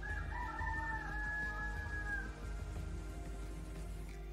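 A rooster crowing once, a call of about two seconds ending in a long held note, over steady background music.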